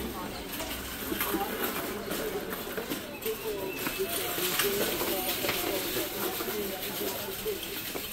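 Indistinct, distant voices of other shoppers over steady background noise, with scattered light knocks.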